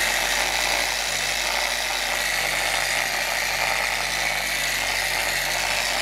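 Electric polisher with a foam pad running steadily with a constant whine, buffing the fresh clear coat on a painted motorcycle fender.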